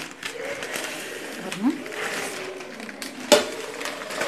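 Newspaper and a steel plate lid being taken off a pot of mutton biryani at the end of its dum cooking: paper rustling, then a single sharp knock about three seconds in.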